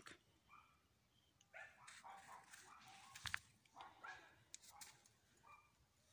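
Several faint, short dog barks from a distant dog, spread over the last few seconds.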